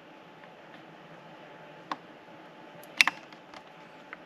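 Plastic dash trim plaque being pressed into its slot in the dash: a faint click about two seconds in, then a sharp double click around three seconds as its clips seat, with a few small ticks after.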